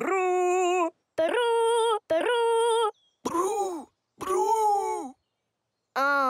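A cartoon character singing a vocal warm-up: three long held sung notes, the first lower than the next two, followed by two shorter moaning voice sounds that rise and then fall in pitch.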